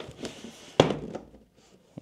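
Packed parts being handled inside a cardboard shipping box: light rustling of packaging, then one sharp knock just under a second in.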